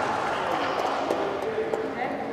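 Indistinct voices echoing in a large sports hall, with no clear words, over the hall's reverberant background hum.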